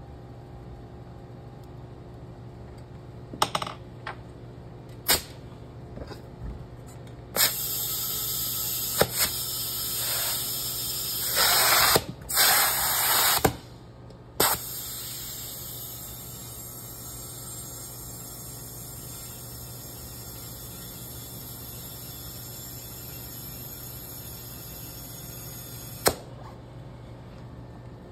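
Compressed air hissing from an air chuck as a 16x6.50-8 turf tire is inflated on its rim. A few knocks come first, then a loud hiss with brief breaks, then a steadier, quieter hiss for about ten seconds that cuts off with a click.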